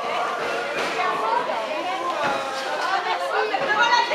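Several people talking and calling out at once, overlapping voices in a sports hall.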